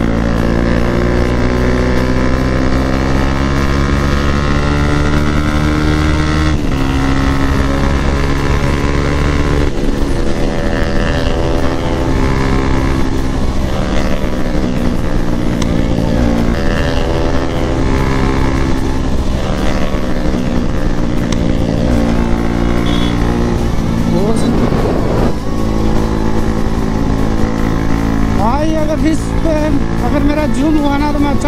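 Bajaj Pulsar NS200 single-cylinder engine heard from the rider's position under hard riding. Its pitch climbs steadily and drops back at gear changes about six and ten seconds in, over a low rush of wind.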